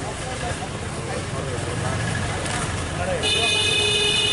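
Outdoor crowd voices over steady road traffic noise. About three seconds in, a vehicle horn sounds for about a second.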